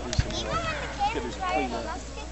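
Several people talking indistinctly, children's higher voices among them. There is a brief low thump about a fifth of a second in.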